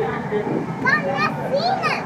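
A high-pitched voice calls out twice, its pitch sliding up and down, over a steady background of outdoor noise.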